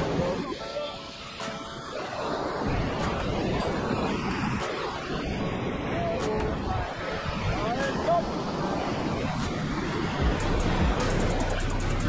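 Whitewater rapids rushing steadily around an inflatable raft, with indistinct voices of the crew. Music with a steady beat comes in near the end.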